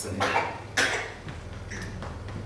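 A man coughs once, sharply, close to a microphone, just after finishing a spoken word.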